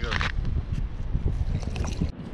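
Wind buffeting the microphone: a low, uneven rumble, with a brief voice at the very start.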